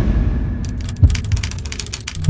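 Outro logo sound effect: a deep boom rumbling away, a sharp bang about a second in, then a run of fine crackles.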